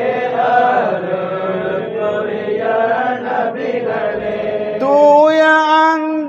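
Men's voices chanting a Tamil Sufi devotional song in praise of the Prophet together, unaccompanied. About five seconds in, a single clearer, louder voice takes up the melody.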